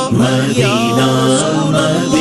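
Naat sung by layered male voices with no instruments: long held notes and sliding chanted phrases, one voice drawn out over a droning chorus.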